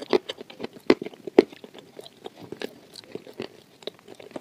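Close-miked chewing of milk-dipped waffle: an irregular run of wet mouth clicks and small crunches, the loudest in the first second and a half.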